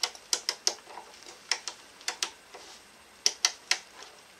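Rotary selector switches on an Airbus A320 ATC/TCAS control panel being clicked through their detents: three quick runs of three or four sharp clicks each, near the start, around two seconds in, and shortly after three seconds.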